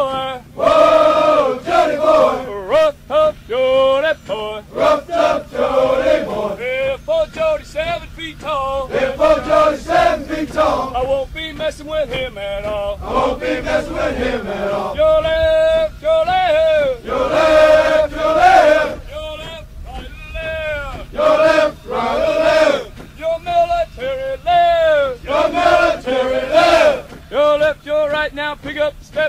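A group of men chanting a military cadence in rhythmic, sung call-and-response.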